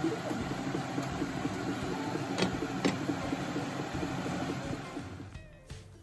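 Adobo liquid simmering in a nonstick frying pan, bubbling and crackling steadily, with two light clicks a little past the middle. The sound fades away near the end.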